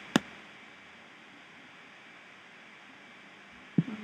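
Quiet steady hiss of room and recording noise, with one sharp click just after the start and another short sharp sound near the end.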